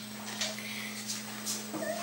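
Faint, brief muffled whimpers from a girl whose mouth is covered by a hand, with a few short breaths or rustles, over a steady low electrical hum.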